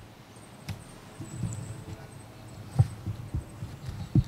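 Faint low background noise with a few soft knocks and thumps scattered through it; the sharpest knock comes a little before three seconds in.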